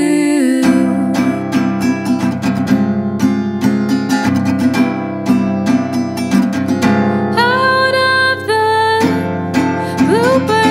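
Instrumental break in a pop song: acoustic guitar strummed in quick, steady strokes. From about seven seconds in, a long held melody line with bending notes comes in over it.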